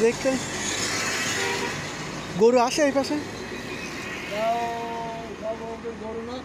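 Roadside traffic: a vehicle passes with a rush of road noise over the first two seconds, a man's voice calls out briefly in the middle, and a held steady tone sounds for about a second near the end.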